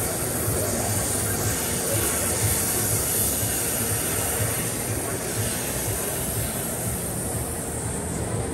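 Flow Mach 200 waterjet's high-pressure jet cutting metal plate: a steady, loud hiss with a low hum underneath.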